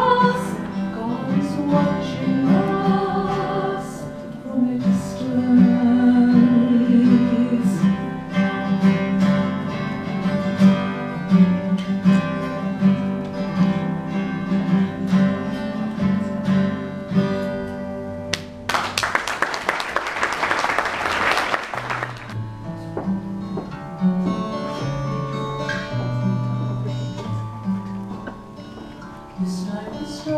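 Acoustic guitar playing with a woman singing. About 19 seconds in there is a short burst of applause lasting around three seconds, after which the guitar goes on with lower bass notes, the start of the next song.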